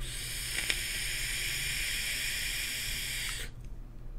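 A long drag on an Eleaf iStick temperature-control mod firing a 0.5 ohm titanium coil in a Mellow V2 tank, set to 540 degrees: a steady hiss of the coil vaping and air being drawn through the tank. It lasts about three and a half seconds and stops suddenly.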